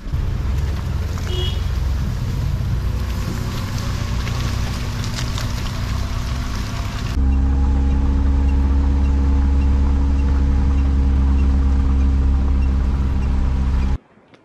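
A car driving on a road, its engine running steadily under road noise. About seven seconds in, the sound cuts abruptly to a louder, steadier engine drone.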